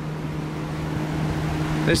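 Electric box fan running steadily: a rush of air over a low, even motor hum.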